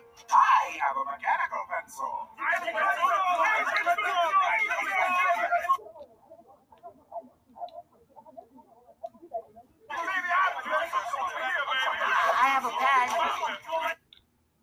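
Many cartoon voices shouting over one another at once, with no words that can be made out. There are two stretches of about four seconds each, with a much quieter gap between them.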